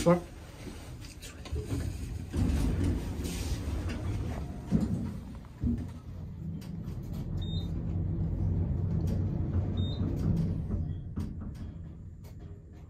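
1970s Otis traction elevator, original motor and controller, running as heard from inside the car: a steady low rumble that starts with a thump about two seconds in, a few more thumps, two short high beeps, then dies away near the end.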